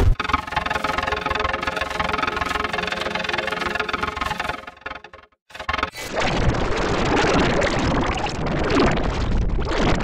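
Heavily distorted, effects-processed logo audio: a steady buzzy held chord for about five seconds, a brief break, then a harsh noisy rumble after about six seconds.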